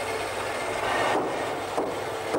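Steady hissing noise of steel being cut at a steam locomotive boiler's tube plate, throwing a shower of sparks. It is loudest about a second in, then eases off.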